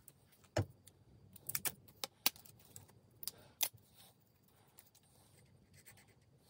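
A handful of sharp, irregular metallic clicks and clinks from a reassembled Sturmey-Archer AG 3-speed Dynohub being handled and turned by hand, mostly in the first four seconds.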